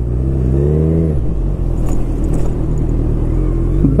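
Motorcycle engine revving up briefly about half a second in, then easing back and running low and steady as the bike rolls slowly.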